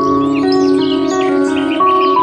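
Background music of slow, held notes moving in a calm melody, with bird chirps sounding high above it.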